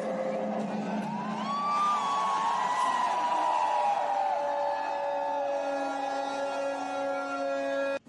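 Ceremony sound from the packed border-ceremony stands: steady held tones with a long, wavering drawn-out voice rising and falling over them from about a second and a half in. It all cuts off abruptly at the end.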